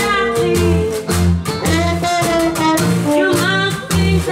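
New Orleans-style jazz band playing a 1920s blues: banjo strumming, washboard keeping time and a double bass walking underneath at about two notes a second, with a bending lead melody line over the top.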